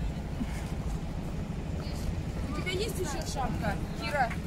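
People's voices over a steady low outdoor rumble, the talking becoming clearer in the second half.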